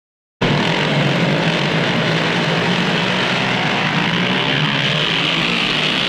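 Motorcycle engines running and revving, the sound effect that opens the record, starting abruptly about half a second in.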